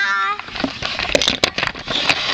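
A short, high cry that rises and then holds for under half a second, followed by rustling and sharp knocks from a handheld camera being swung about while its holder walks.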